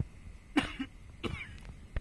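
A man sobbing in short, choked, broken breaths: two gasping sobs, with a sharp click near the end.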